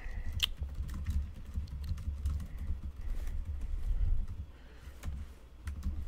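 Typing on a computer keyboard: a run of quick key clicks over a low rumble, busiest for about four seconds and then thinning to a few scattered clicks.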